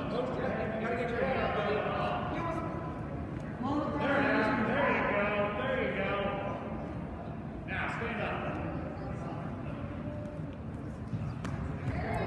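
Men's voices shouting from around the mat, loudest from about four seconds in until nearly eight seconds, typical of coaches and spectators calling instructions to wrestlers during a bout.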